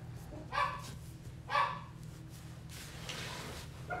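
A dog barking twice, about a second apart, followed by a soft rustling noise.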